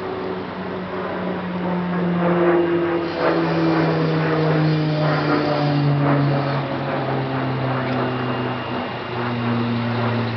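An engine running steadily, its pitch sliding slowly down over several seconds and then dropping a step near the end.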